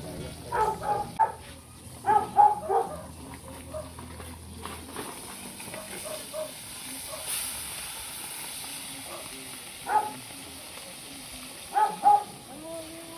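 A dog barking in short sharp runs: three quick barks about half a second in and four about two seconds in, then single barks near the ten-second mark and at the end.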